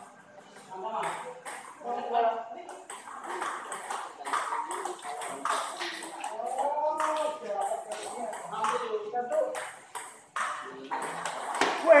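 Table tennis balls being hit back and forth, a run of sharp, irregularly spaced clicks of ball on paddle and table from rallies on more than one table, with voices talking underneath.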